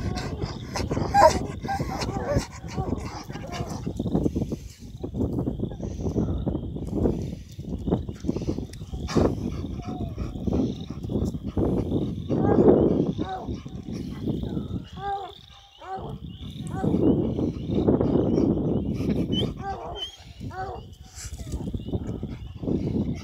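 Bluetick Coonhound baying: several long, drawn-out bawls at intervals over a steady low rumble.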